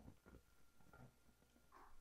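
Near silence: room tone with a few faint soft ticks.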